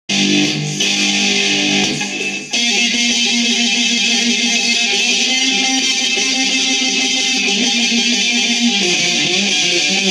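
Homemade two-string electric guitar built from a tennis racket, with a Telecaster pickup and tuned to open G, played amplified: sustained notes that shift in pitch, with a brief drop about two seconds in before the playing carries on.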